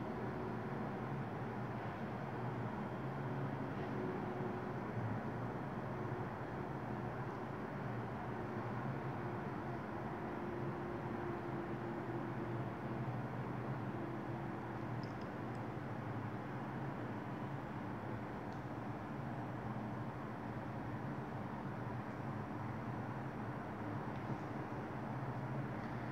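Steady low hum with an even hiss of background noise, with no distinct events: room tone.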